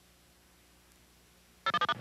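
Near silence on the broadcast line with a faint steady hum. Near the end comes a brief run of rapid electronic beeps.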